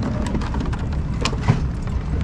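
Steady low outdoor rumble with a few light clicks, the loudest about a second and a half in.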